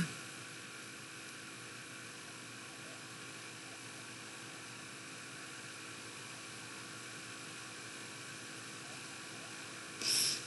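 Steady faint hiss with a low electrical hum, the background noise of the recording microphone, even and unchanging.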